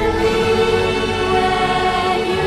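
Female voices singing long held notes together with a choir and instrumental backing, a slow ballad.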